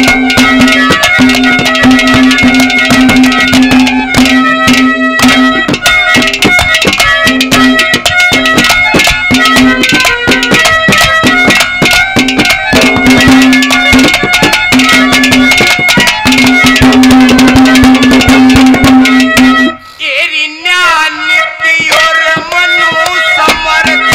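Haryanvi ragni folk accompaniment playing an instrumental passage: fast hand-drum strokes over a held, reedy drone note. About twenty seconds in, the drums and drone stop, and a lone wavering melody carries on.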